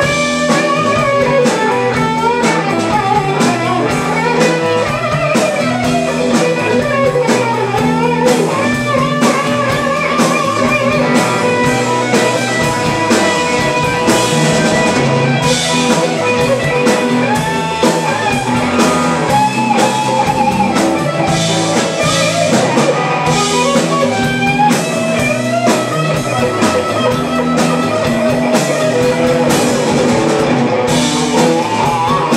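Live blues band playing an instrumental passage without vocals: electric guitars over a drum kit.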